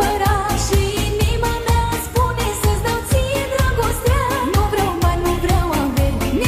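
Romanian manele song with 16D spatial processing: an ornamented lead melody with quick bends and turns over a steady dance beat.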